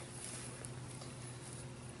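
Bare hands digging and scraping through dry garden soil to uncover potatoes, with soft rustling and small clicks of crumbling dirt.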